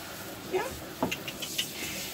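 Water spraying from a handheld hose shower head onto a wet dog's coat, a steady hiss, as the shampoo is rinsed off; a few small clicks after about a second.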